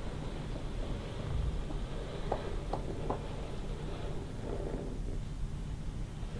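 Wooden planchette sliding across a wooden Ouija board under fingertips, with a few faint clicks about two to three seconds in, over a steady low room hum.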